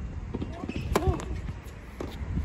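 A tennis serve: the racquet strikes the ball once about a second in with a sharp pop, and a short vocal grunt from the server comes with the hit.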